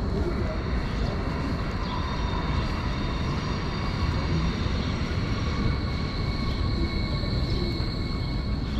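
City street traffic: a steady low rumble with a constant high-pitched whine held throughout, typical of a vehicle running close by.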